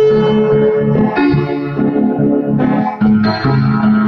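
Piano playing a slow solo: sustained chords under a held melody note, with new chords struck about every second.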